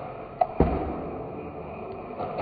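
A Nerf Ultra Two dart blaster firing: a sharp click, then about a fifth of a second later a louder sharp thud with a brief low rumble after it.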